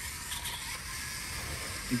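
Faint, steady whirring and hiss of a small VEX robot's electric drive motors running at half power as the robot is set down on carpet.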